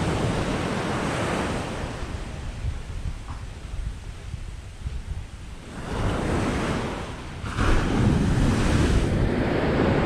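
Rough Caribbean surf breaking and washing up a sandy beach, surging and easing as the waves come in: loud at first, dropping a few seconds in, then building again about six seconds in. Wind buffets the microphone throughout.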